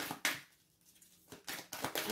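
A deck of oracle cards being shuffled by hand: a quick run of light card clicks, a short pause, then more clicks near the end.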